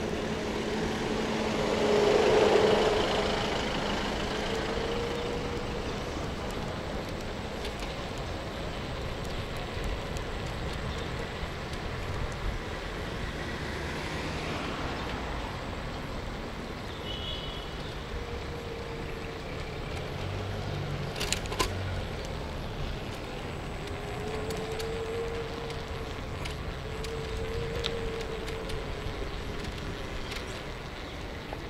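Street traffic: a van passes close by, loudest about two to three seconds in, then road traffic carries on steadily, with a few sharp clicks a little after twenty seconds.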